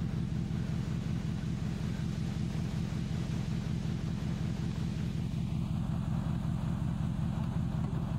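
A vehicle engine running steadily at idle, a low, even hum with a fast pulse.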